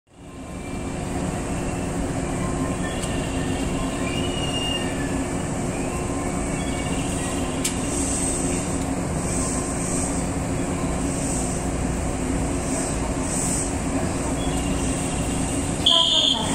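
JNR 115 series electric train standing at the platform, its onboard auxiliary equipment running with a steady hum. Faint short high chirps are heard over it.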